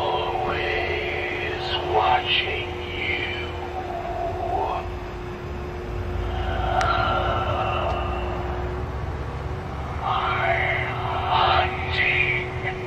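Motorised graveyard-ghoul tombstone decoration running through its routine: the ghoul's head rises behind the stone and sinks back while its recorded voice track plays in three bursts over a steady electric hum.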